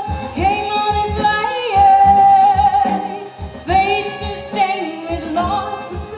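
Live band music: a woman singing, with long held notes, over cello, violin and a drum kit.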